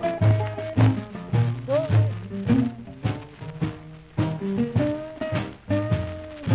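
Instrumental break of a 1949 rhythm-and-blues 78 rpm record, with a bass line thumping out about two notes a second under pitched instrumental lines. It is played from a disc in poor playing condition.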